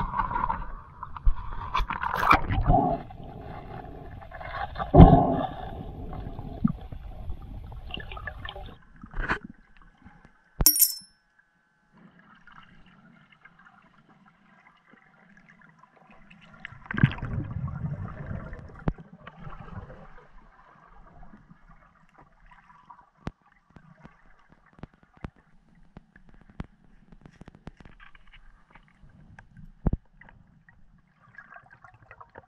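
Water splashing and gurgling around a diver at the surface, with a few knocks. Then comes quieter underwater sound: a rush of gurgling bubbles about two-thirds of the way through, and faint scattered clicks.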